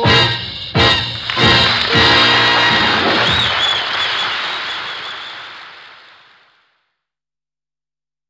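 Closing bars of a swing big-band arrangement: a few punched chord hits in the first two seconds, then a final held chord that fades out to silence.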